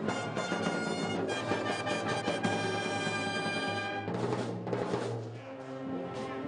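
Massed wind bands of saxophones, brass and drums playing together, with steady drum strokes under full sustained chords; about four seconds in the high chord breaks off, leaving lower brass notes and cymbal and drum hits.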